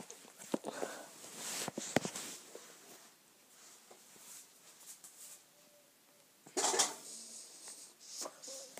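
A handheld phone being moved about close to its microphone, with scattered clicks and rubbing. A louder half-second rush of noise comes a little past six seconds in.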